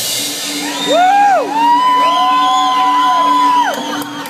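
Audience whooping and cheering in a club: a short rising-and-falling whoop about a second in, then two long held whoops that overlap and fall away near the end. A steady low hum runs underneath.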